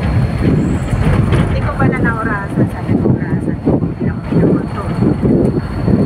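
Engine and road noise heard from inside a moving vehicle, with wind buffeting the microphone through an open window. Brief indistinct voices are heard about two seconds in.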